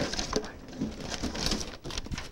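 Hand rummaging among paper slips inside a cardboard box, with faint rustling and crinkling as one slip is pulled out.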